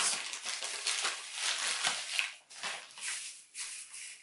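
Plastic packaging rustling and crinkling as a mail-order parcel is unwrapped by hand, in irregular rustles that thin out toward the end.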